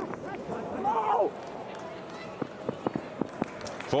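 Open-air cricket-ground ambience: a man's shout from the field in the first second or so, then a few scattered sharp clicks.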